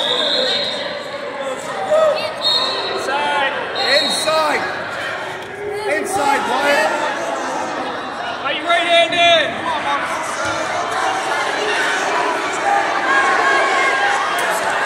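Large arena hall full of overlapping shouts from spectators and coaches around the mats, with crowd chatter underneath. Three short, high whistle blasts come in the first few seconds.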